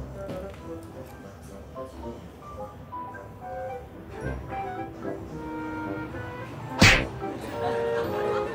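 Background music with a light melody of held notes. Near the end there is a single loud, sharp whack as the costumed figure tumbles out of the hammock.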